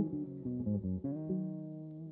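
Epiphone ES Les Paul Pro semi-hollow electric guitar played through an amp: a quick run of single notes, then one note held and fading from a little over a second in.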